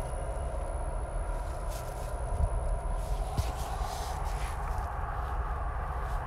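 Steady low hum and faint wash of a running reef aquarium's pumps and water flow, with a faint high whine that stops about halfway through.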